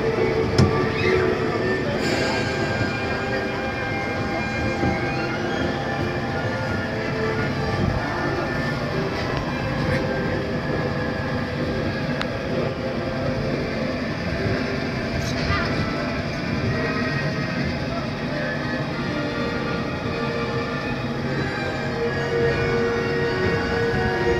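Monorail train running steadily along its track, heard from an open car, with music and indistinct voices mixed in.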